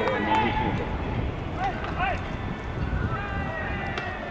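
Baseball players' shouted calls carrying across the field during pregame fielding drills, with two short calls about a second and a half and two seconds in, over steady low outdoor background noise.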